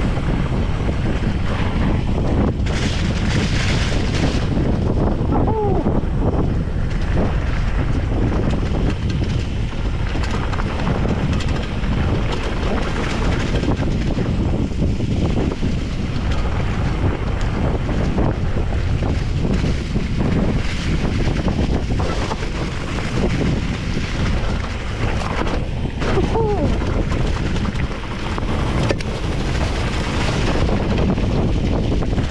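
Wind buffeting the camera microphone on a mountain-bike downhill run, over the rumble of tyres rolling on a dirt and leaf trail, with frequent rattles and knocks from the bike over bumps.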